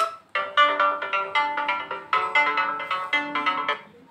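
Oppo A53s built-in ringtones previewed one after another from the ringtone list: a short melody starts about a third of a second in and is cut off, and a different melody starts about two seconds in as the next ringtone is tapped.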